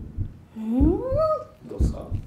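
Heartbeat sound effect: low thumps in lub-dub pairs, about one pair a second. About half a second in, a drawn-out vocal sound glides upward in pitch and holds briefly.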